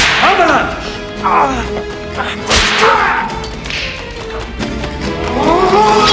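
A sword whooshing through the air in several quick swings, each sudden and sharp, over a film's orchestral score.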